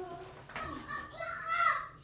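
A faint, high-pitched voice talking briefly, loudest near the end.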